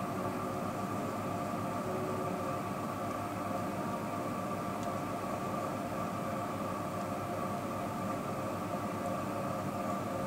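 A steady background hum with several constant pitches and a faint hiss, unchanging throughout.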